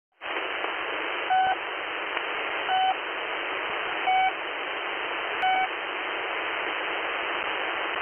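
Channel marker of the Russian military shortwave station 'The Pip' on 3756 kHz, received in upper sideband: four short beeps about 1.4 seconds apart over steady radio static. The beeps mark the channel as held open between voice messages.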